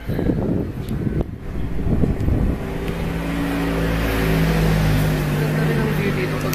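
Wind buffeting the microphone as a heavy low rumble. From about two and a half seconds in, a vehicle engine running adds a steady low drone.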